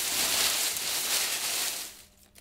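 Hands stirring through a bin full of paper strips: a steady, dense rustle and crackle of paper that dies away near the end.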